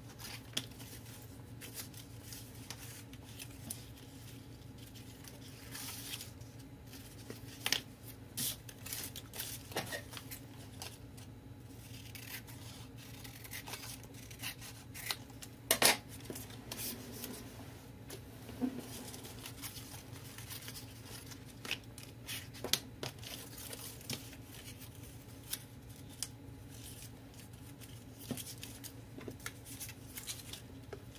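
Paper and craft tools being handled at a work table: scattered light clicks, taps and paper rustles, with one sharper click about halfway through, over a steady low hum.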